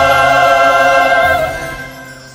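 Mixed choir holding a sustained chord, which is released and dies away about a second and a half in.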